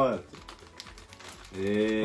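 Plastic snack bag handled and turned over in the hands: a run of faint, light crinkling clicks between spoken words.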